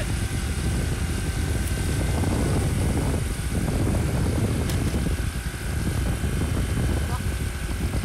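Wind buffeting the microphone and road noise from riding on a moving motorbike, a steady rush heaviest in the low end that swells and dips.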